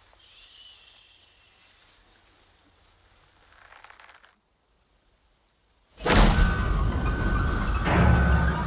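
A hushed, very quiet stretch of trailer soundtrack with only faint traces of sound, broken about six seconds in by a sudden loud full-range hit that carries on as a loud passage of trailer score.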